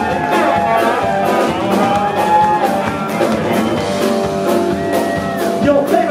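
Live band playing an instrumental passage: electric guitar lines with held, bending notes over drums, bass and keys.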